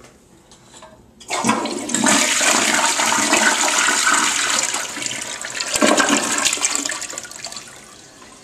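A 2000s toilet flushing: the rush of water starts abruptly about a second in and swirls loudly through the bowl, surges once more about three-quarters of the way through, then tapers off near the end as the bowl drains.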